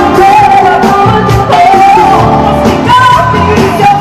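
A woman singing a pop song live into a microphone over a full band that includes acoustic guitar.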